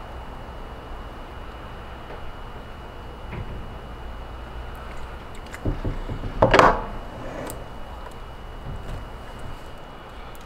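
Workbench handling noise while soft plastic is poured into a core shot worm mold: faint knocks and a low thump, then a short, louder squeaky pitched sound about six and a half seconds in.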